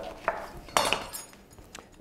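Chef's knife cutting an orange in half on a wooden cutting board: a small knock near the start, then a sharper, louder cut and knock of the blade on the board about three quarters of a second in.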